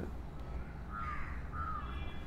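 Two short bird calls, faint and some way off, about a second in and again just after, over a low steady background hum.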